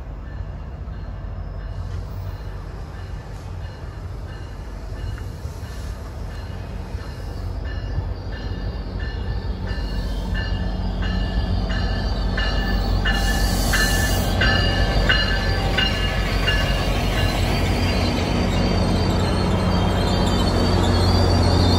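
A GO Transit train pulling into the station, its diesel locomotive's engine rumble growing steadily louder as it approaches and passes. A bell rings steadily, about three strikes every two seconds, and there is a short hiss about two-thirds of the way in, with the bilevel coaches rolling by at the end.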